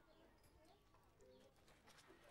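Near silence: faint outdoor ambience with a few faint short calls and light clicks.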